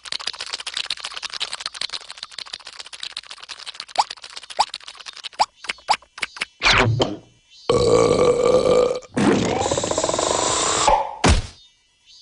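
Cartoon sound effects: a long crackling slurp of liquid being sucked through a straw, with a few short squeaky glides, then squeaky vocal noises and strained grunts from the cartoon larvae, and a short loud burst about a second before the end.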